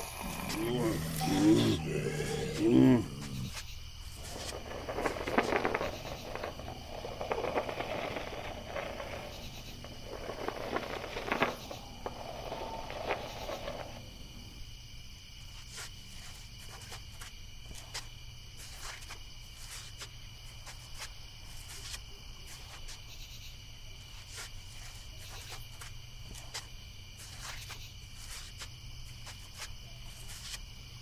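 Sound effects of zombies: low, moaning groans and grunts for the first few seconds, with more sporadic sound up to about halfway. After that a quieter night ambience follows, with faint insect chirping and scattered small clicks.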